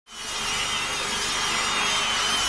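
A steady grinding, whirring noise with a thin, wavering high whine, like a power saw; it fades in quickly at the start and holds at an even level.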